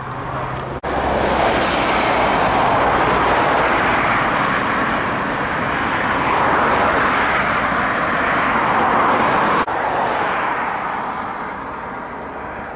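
Loud, steady rushing vehicle noise with no distinct engine note, swelling and easing slowly. It breaks off for an instant about a second in and again near ten seconds.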